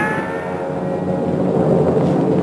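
The ringing tail of a gunshot sound effect: a few steady tones that slide slowly down in pitch and fade, over a low hum that grows a little toward the end.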